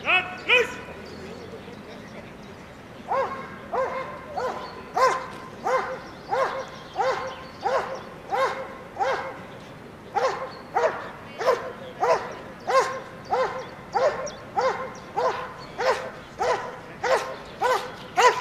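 A police working dog barking: two barks at the start, then after a pause of about three seconds a long, steady run of rhythmic barks, about one and a half a second.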